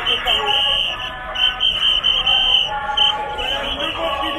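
Shrill whistles from a protest crowd, blown in overlapping short and long blasts over the crowd's voices.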